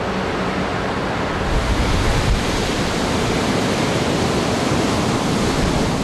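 Large typhoon-driven waves breaking on a beach in strong wind: a steady rushing noise that gains a deep rumble about a second and a half in.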